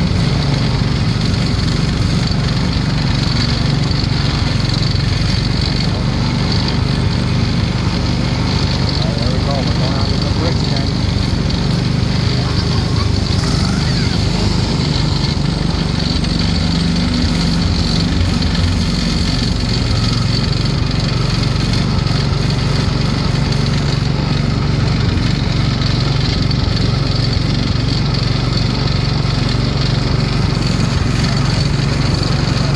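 Small gasoline engine of an antique-style ride car running steadily at an even speed, heard from the driver's seat as the car drives along its track.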